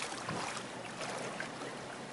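Floodwater in a flooded underpass: a steady watery noise with faint small splashes.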